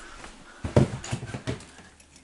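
Footsteps thudding on old wooden floorboards: about three heavy steps starting near the middle, the first one loudest.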